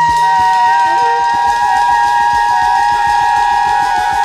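Free-improvised jazz: two or three long tones from the wind instruments and voice, held close together in pitch and slightly wavering, over rapid light drum taps.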